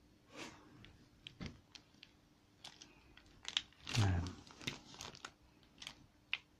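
Plastic sheeting crinkling and scattered light clicks as a motorcycle gearbox shaft with its gears is handled and turned on it, loudest about four seconds in.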